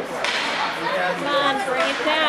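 Spectators' voices talking and calling out, with a sharp crack about a quarter of a second in.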